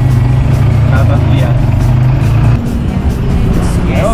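Motorcycle tricycle engine running with a steady low hum, which stops about two and a half seconds in.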